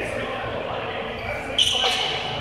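Players' voices echoing in a large gym hall during an indoor floorball game, with a sudden short high-pitched sound about a second and a half in that is the loudest moment.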